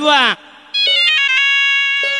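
A man's sung phrase ends briefly, then an electronic keyboard plays a quick run of bright notes stepping down in pitch, the notes left ringing as a sustained chord.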